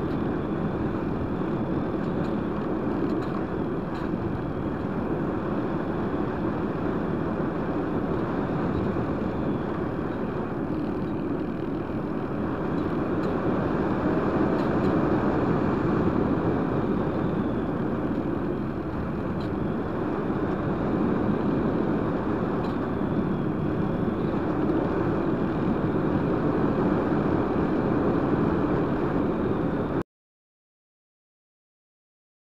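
Steady rush of airflow noise over a radio-controlled glider's onboard camera as it glides with its motor off. The rush grows louder in the middle as the glider banks steeply and picks up speed, then settles again.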